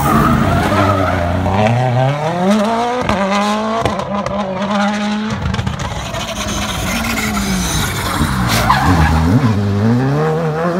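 Rally cars' turbocharged four-cylinder engines driven hard through a tight hairpin. First a Toyota Yaris WRC revs up steeply and shifts up twice as it pulls away, holding a steady high note. Later a Škoda Fabia R5 comes in on falling revs, with a sharp crack and quick up-and-down revs as it shifts down, then accelerates again near the end.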